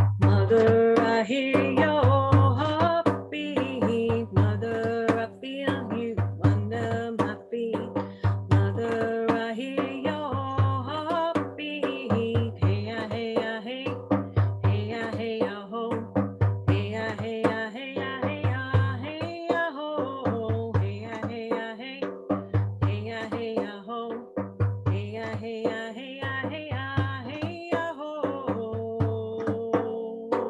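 A woman singing a chant to her own frame drum accompaniment: a deep bass stroke on the drum about once a second, with lighter, sharper finger taps near the rim between the strokes.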